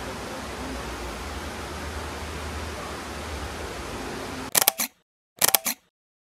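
Steady rushing noise of a nearby waterfall. It cuts off to silence, and then two camera-shutter sound effects click about a second apart.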